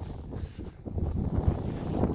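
Wind buffeting the microphone: a low, gusting rumble that dips briefly about halfway through.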